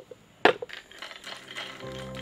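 A sharp clink about half a second in, then a few lighter ticks: pistachios in their shells dropping onto a ceramic plate. Soft music comes in near the end.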